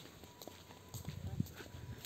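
Faint footsteps while walking outdoors, with a few soft low thumps about a second in.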